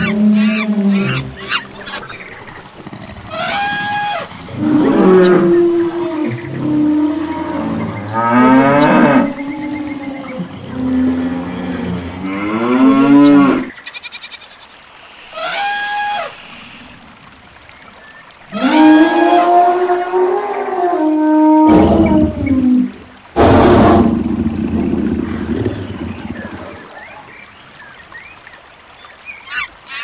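A string of animal call sound effects, one after another, long pitched calls with some sliding up and down in pitch, among them cattle mooing. About three quarters of the way through comes a louder, harsh noisy call.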